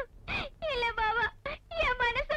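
A woman's voice in long, high, drawn-out notes that waver and slide downward, like strained singing or theatrical wailing, with a short note first and a longer one about a second in.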